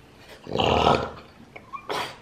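A French bulldog gives one short, rough, growly vocal grumble lasting under a second, about half a second in, as it begs to be fed. A brief click follows near the end.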